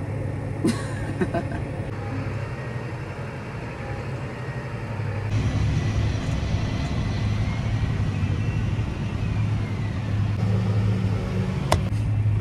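John Deere 8235R tractor engine running steadily with a low hum, heard from inside the cab. About five seconds in it grows louder and rougher, and a single sharp click comes near the end.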